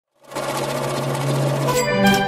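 Intro sound effect: a rapid, steady electronic buzzing over a low hum starts abruptly, then near the end resolves into a sustained musical tone as the logo sting lands.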